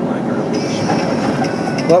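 Steady road and engine noise inside a moving vehicle's cabin.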